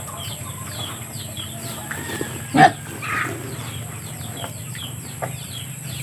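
Backyard chickens clucking, over a steady run of short, high, falling cheeping chirps, with one brief louder sound about two and a half seconds in.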